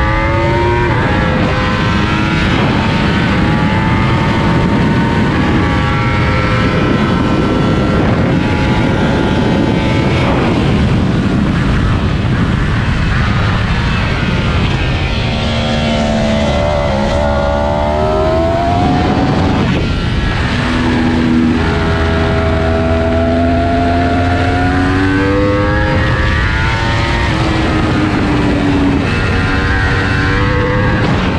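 Yamaha R1 inline-four sportbike engine under hard track riding: its pitch climbs and drops back again and again as it revs out and shifts through the gears, with longer falling sweeps as it slows for corners. Heavy wind rush on the bike-mounted camera runs underneath.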